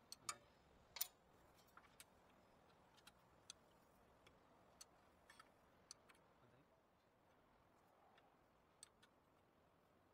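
Faint, scattered metallic clicks of an open-end wrench working a brake caliper bolt, two sharper clicks in the first second, then lighter ticks every second or so.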